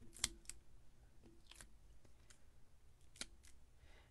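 A few faint, sharp clicks and ticks as foam adhesive dimensionals are peeled from their sheet and pressed onto the back of a cardstock piece. The loudest click comes about a quarter second in.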